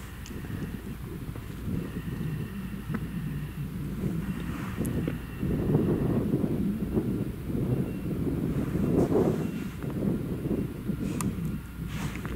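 Grimme Varitron 470 Terra Trac self-propelled potato harvester running under load while unloading over its elevator into a trailer driving alongside: a steady engine and machinery rumble that grows louder about halfway through, with wind on the microphone.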